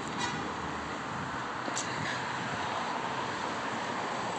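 Steady street traffic noise, an even hum of cars on a city road, with a couple of faint clicks.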